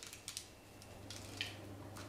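Faint light ticking and a short rustle as toasted sesame seeds are sprinkled by hand from a plastic bag onto dough buns on a parchment-lined baking tray, over a low steady hum.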